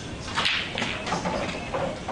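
Yellow pool ball dropping into a corner pocket with a sharp clack about half a second in, followed by smaller knocks and clatter of balls.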